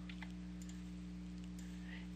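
Faint steady electrical hum of the recording setup, with a single faint computer-mouse click about a quarter of a second in.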